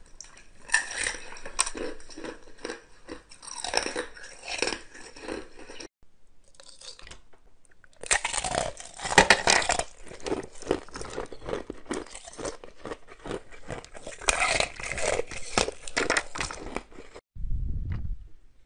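Hard ice being bitten and chewed close to the mouth: rapid runs of loud crunches and crackles. There is a brief lull about six seconds in.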